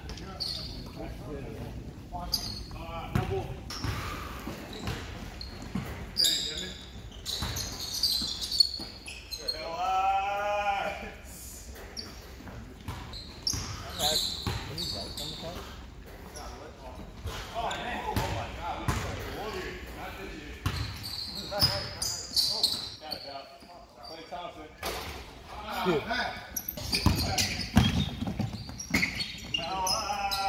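Basketball bouncing on a hardwood gym floor with repeated impacts, echoing in a large hall, with players' voices and calls mixed in. A louder pitched call or squeak stands out about ten seconds in.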